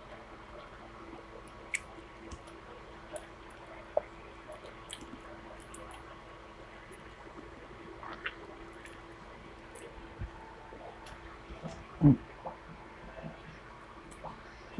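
Quiet mouth sounds of someone eating rice and fish by hand: soft wet chewing with scattered small smacks and clicks, over a faint steady hum.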